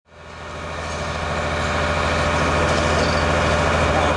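Steady low drone of a running engine, fading in over the first second and holding even throughout.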